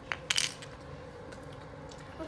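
A Rubik's cube knocking on a hard tabletop: a single light click, then a brief clatter of hard plastic about a third of a second in.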